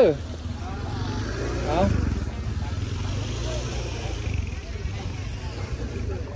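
A motor vehicle engine running close by, a low rumble that swells about two seconds in and then holds steady.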